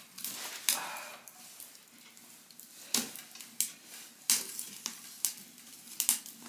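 Wood fire crackling in a small wood stove, with irregular sharp pops and snaps over a faint hiss, the fire now burning well.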